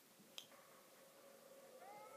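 Near silence, with a faint steady tone and a faint rising tone near the end: the quiet opening of a music video just starting to play.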